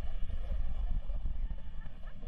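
A steady low rumble that wavers in strength, with a faint hiss above it.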